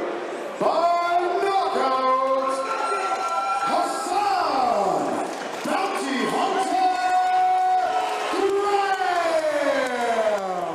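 Ring announcer's voice naming the winner of the fight in a long, drawn-out delivery, vowels held for a second or more, the last one sliding down in pitch. A crowd cheers underneath.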